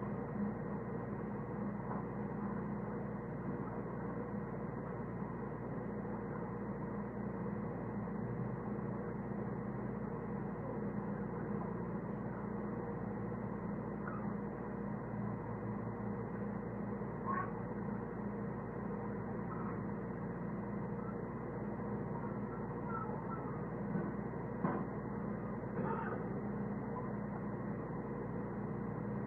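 Low, steady hum and hiss of an old, narrow-band recording of a quiet church room, with a few faint knocks in the second half.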